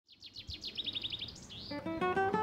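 A songbird singing a quick run of falling notes that ends in a short flourish, after which acoustic guitar music comes in near the end.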